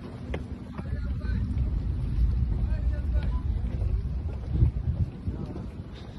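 Wind buffeting a phone microphone: an uneven low rumble that swells in gusts through the middle and eases near the end.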